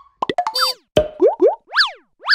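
Cartoon-style logo-animation sound effects: a quick run of clicks and pops, two short rising whoops, then a springy boing that rises and falls in pitch.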